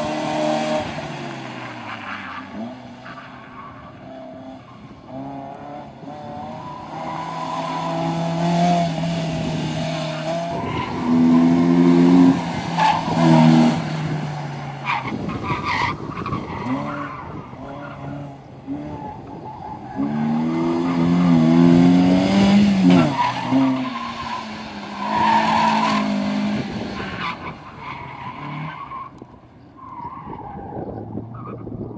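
Slalom cars driven hard through a cone course: engines revving up and dropping back again and again as they accelerate and brake between the cones, with tyres squealing in the tight turns. It is loudest in two stretches, about a third of the way in and again past two thirds.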